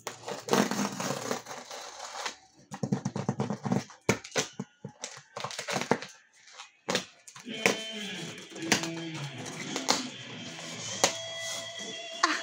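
Packing tape being ripped and peeled off the seam of a cardboard box, with scraping and tapping of hands on the cardboard; music comes in about halfway through.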